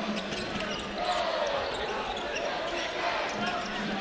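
Steady arena crowd murmur in a large gym, with a basketball bouncing on the hardwood court during live play.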